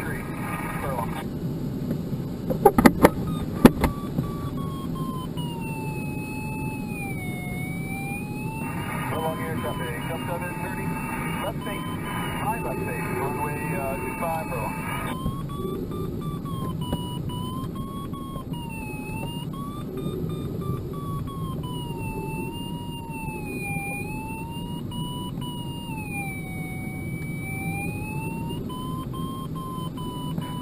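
A glider's audio variometer sounding a continuous tone that slides up and down in pitch every couple of seconds as the vertical speed changes. Beneath it runs a steady rush of air past the cockpit, and a few sharp clicks come about three seconds in.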